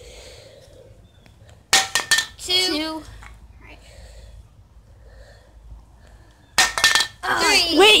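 Metal aerosol spray can clattering onto concrete after being flipped: a short rattle of hits about two seconds in and another near the end, the can failing to land upright.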